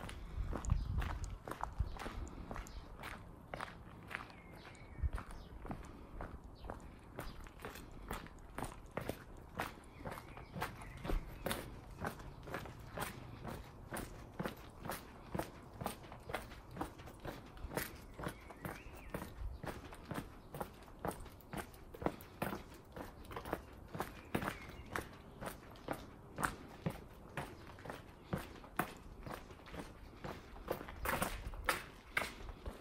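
Footsteps on a cobblestone street, an even walking pace of about two steps a second, each step a short, sharp scuff on the stones.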